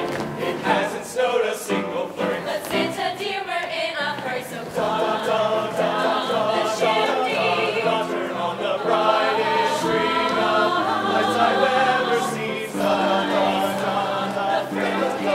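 A mixed-voice show choir singing an upbeat Christmas number in harmony, the chords moving throughout.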